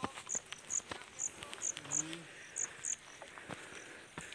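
An insect chirping in short, high, evenly repeated notes, about two to three a second, stopping about three seconds in, over soft footsteps and scuffs on a grassy, stony trail. A brief voice sound about two seconds in.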